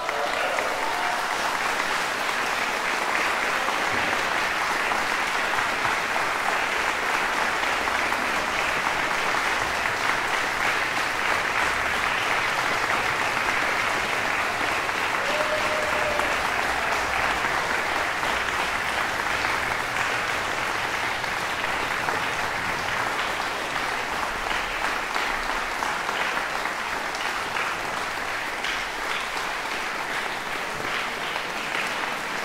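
Audience applauding: the clapping breaks out all at once, holds steady and eases slightly near the end.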